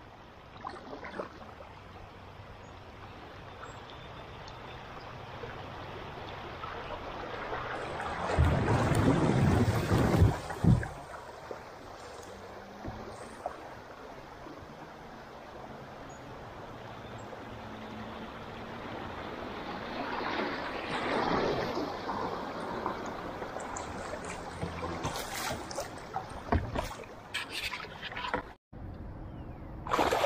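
River water rushing over a shallow riffle around a drifting kayak, a steady wash that swells louder twice, about eight seconds in and again around twenty seconds. A few light knocks come near the end.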